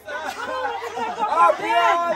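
Several people chattering and exclaiming at once in excited voices, with a loud, high-pitched exclamation near the end.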